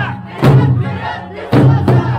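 Traditional Okinawan Eisa: large barrel drums (ōdaiko) struck together in a slow steady beat, two strokes about a second apart, with the dancers' shouted calls and folk music running underneath.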